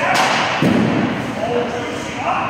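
Ice hockey shot: a sharp crack of the stick striking the puck just after the start, then about half a second later a dull thud as the puck reaches the goalie.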